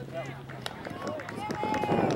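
Several voices shouting over one another as a baseball play unfolds, with one long, drawn-out yell near the end.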